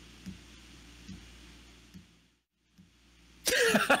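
Faint room hum with a few soft thumps, a brief dropout to silence, then loud laughter starting near the end, in quick repeated pulses.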